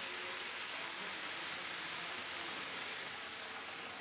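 HO-scale model train rolling along the layout's track, heard as a steady, even hiss.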